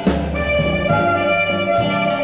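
Chicago blues band playing an instrumental passage with no singing, recorded in 1955: electric guitar, bass and drums, with drum hits keeping a steady beat a little under once a second.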